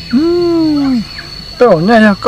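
A man's voice drawing out one long vowel of about a second, its pitch rising and then sinking, followed after a short pause by the start of speech.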